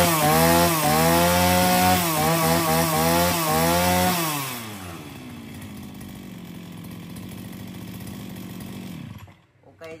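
Husqvarna 541 two-stroke brush cutter engine revving at high speed, its pitch rising and falling with the throttle. About four and a half seconds in, it drops back to a quieter steady idle, then cuts off shortly before the end. It sounds very crisp and runs very nicely, showing the engine is in good running order.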